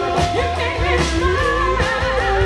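Live rock band playing a song: a singer's voice carries the melody over guitars, bass guitar and a drum kit, with regular drum hits.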